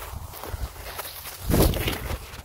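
Footsteps and rustling through grass, picked up close on a body-worn camera, with a louder burst of handling noise about one and a half seconds in.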